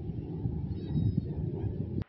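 Wind buffeting the microphone: a low, gusting rumble that cuts off abruptly at the end.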